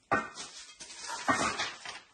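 A dog whimpering, a few short cries.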